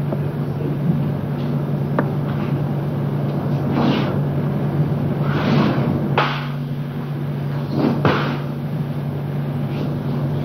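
A steady low hum with hiss, broken by a few brief rushes of noise about four, five and a half, six and eight seconds in.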